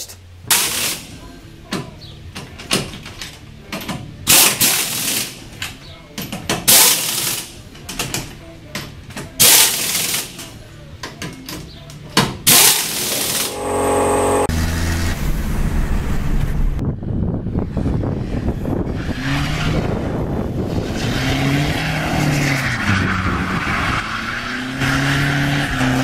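Pneumatic impact wrench rattling in a series of short bursts on a ute's rear wheel nuts. Then, from about halfway, the ute's 2.5-litre Mazda WL-T turbo diesel revs up and down with the rear tyres spinning continuously through doughnuts in third gear.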